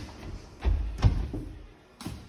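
Running footsteps thudding on a wooden hall floor: a run of heavy strides, the two loudest a little under and just after a second in.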